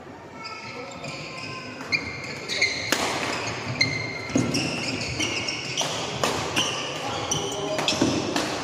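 Badminton doubles rally on a wooden court: sharp racket strikes on the shuttlecock about once a second from about two seconds in, with many short high squeaks of shoes on the floor.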